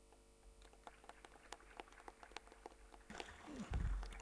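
Light, scattered applause from a small audience: sparse, uneven handclaps, a few at a time, with a low thud near the end.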